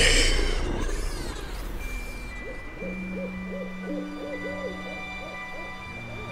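Edited film sound design: a loud whoosh at the start that sweeps down over the next two seconds. Then held drone notes, over which a run of short rising-and-falling hoot-like calls repeats about three times a second.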